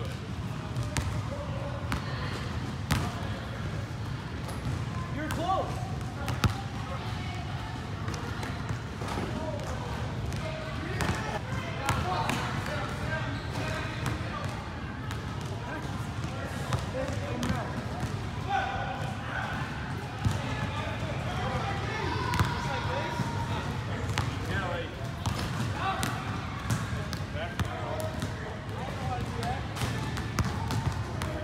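Basketballs bouncing on a hardwood gym floor, irregular thuds scattered throughout, echoing in a large hall. Under them run a steady low hum and the chatter of voices.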